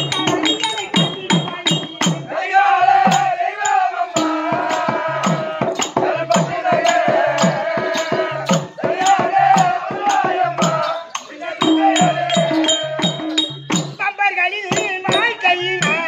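Live Therukoothu folk accompaniment: barrel hand drums beating a steady rhythm under a melody of long, wavering held notes that come in phrases.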